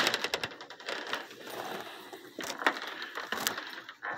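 Crisp crunching in packed snow: a quick run of crackles at first, then scattered crunches and a few sharp clicks.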